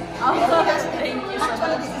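Speech: two people talking, with chatter in the background.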